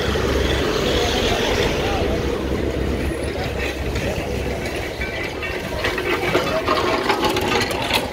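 Busy street ambience: motor-scooter and car engines running nearby, with people talking in the background.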